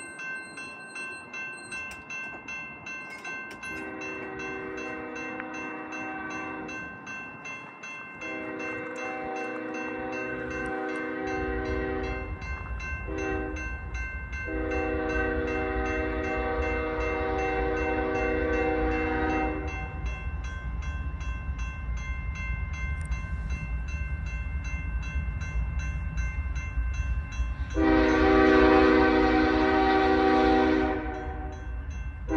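A GE ES44AC diesel locomotive's horn sounds the grade-crossing signal: two long blasts, a brief one, then a long one, followed by another long blast near the end. Under it the crossing bell rings steadily, and from about a third of the way in the low rumble of the approaching loaded coal train builds.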